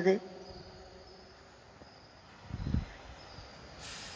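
A pause in speech: faint steady background noise, with a soft low thump about two and a half seconds in and a brief hiss just before the voice resumes.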